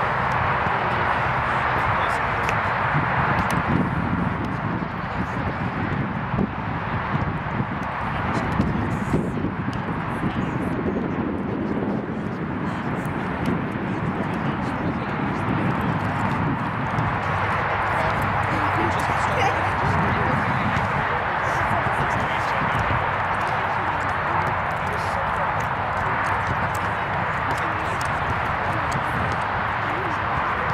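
Indistinct voices of spectators and players across an outdoor soccer field, with no clear words, over a steady background hiss.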